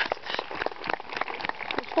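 Handling noise from a camera being moved or covered: a rapid, irregular patter of small clicks and rustles.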